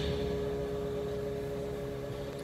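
A quiet, held chord from the band playing through a concert PA, several steady notes sustained under a low rumble and fading slightly, in a pause between vocal lines.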